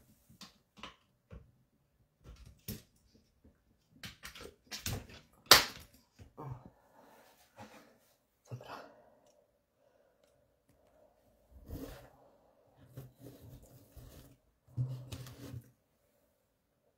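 Scattered clicks and knocks of small objects being handled and set down on a desk, with one sharper click about five seconds in and a run of low, short sounds near the end.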